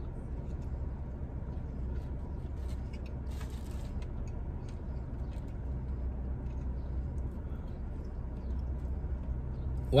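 A man chewing a mouthful of cheeseburger, with faint wet mouth clicks, over the steady low hum of a parked car's cabin. There is a short rustle about three seconds in.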